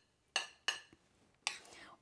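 Metal spoon clinking against a ceramic plate three times while spooning couscous onto it.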